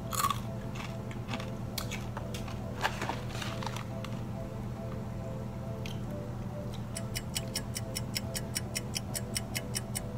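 Crisp fried bitter gourd snack being bitten and chewed: a crunch right at the first bite and a few more crackly crunches between about two and four seconds in. Near the end come steady chewing crunches about four a second, all over soft background music.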